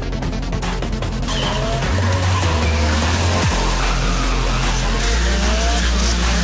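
Background music with a steady beat; about a second in, a car comes in, its engine rising in pitch in short revs over a haze of tyre squeal.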